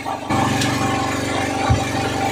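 Engine running steadily with an even low pulse, stepping up louder about a third of a second in.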